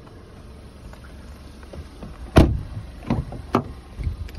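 A Volkswagen Golf Mk6 car door shuts with one loud thump a little over halfway through, followed by two lighter latch clicks as the rear door is opened.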